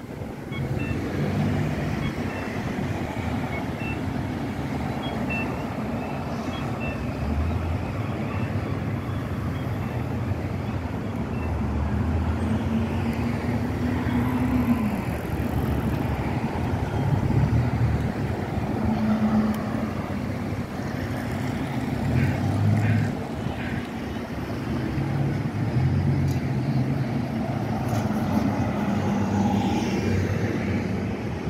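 City street traffic: cars and a pickup truck driving past, a steady mix of engine and tyre noise that swells as each vehicle goes by.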